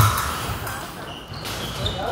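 Fencers' feet thudding on the floor as they step and lunge, the loudest thud at the very start, with voices of other people in the hall behind.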